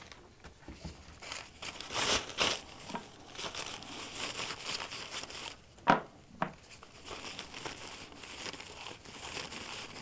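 Brown paper towel crinkling and rustling as it is handled and rubbed over a metal AC tube fitting to wipe it clean. Two sharp knocks come about six seconds in as a part is set down on the workbench.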